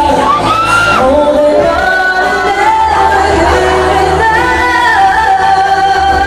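A woman singing a pop song live into a microphone over a backing track, her melody gliding between notes and holding long notes in the second half.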